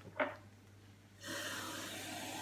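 Kitchen tap turned on about a second in, water running steadily from the faucet to fill a glass of water.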